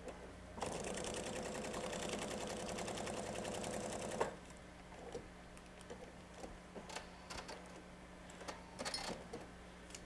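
Pfaff sewing machine stitching a seam, running steadily at an even rhythm for about three and a half seconds and then stopping. A few light clicks and handling noises follow.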